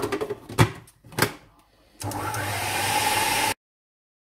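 A few sharp knocks of handling on the counter, then about two seconds in a Goldair food processor's motor starts and runs steadily, blitzing hummus to make it finer, before cutting off suddenly about a second and a half later.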